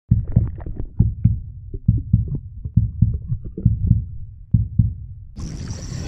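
Muffled underwater sound from a camera held just below the water surface: irregular low thuds of water moving against it, a few each second. Music comes in near the end.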